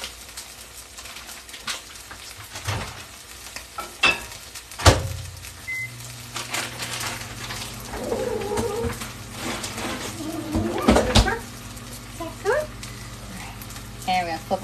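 Chicken breasts sizzling as they sear in a hot cast iron pan. About five seconds in there is a sharp thump and a short electronic beep, then a steady low hum as a microwave starts running, with another knock near 11 seconds.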